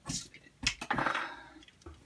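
Handling noise of LEGO and packaging: a sharp plastic click a little after half a second, then a clear plastic bag rustling for about a second, fading out.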